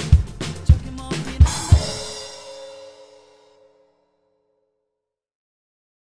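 Drum kit with Paiste cymbals played over the song's backing track, a steady kick-and-snare groove ending on two accented final hits with a crash that rings out with the last chord. The sound fades to silence about three and a half seconds in.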